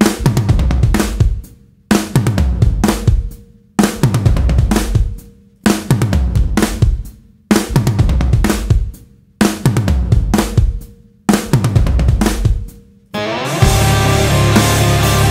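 Rock drum kit played in a stop-start pattern: a loud hit of kick, snare and cymbal followed by a short phrase that dies away into a brief gap, repeated about seven times at roughly two-second intervals. About a second before the end, a full band with heavy distorted guitar comes in.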